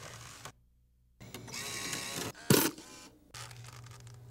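A brief mechanical whirring, then a single loud clack about two and a half seconds in. A steady low hum comes back near the end.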